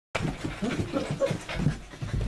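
Five-week-old sheepadoodle puppies breathing and making short, irregular puppy noises as they move about.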